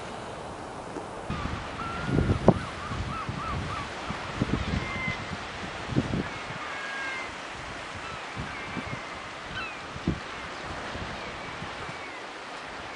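Steady coastal surf and wind noise with short seabird calls, a quick run of them about a second and a half in and a few scattered ones later, and a few low gusty thumps on the microphone.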